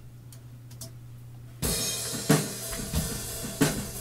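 Playback of a looped section of a live drum kit recording, kicking in suddenly about a second and a half in with heavy drum hits. Before that there is only a low steady hum.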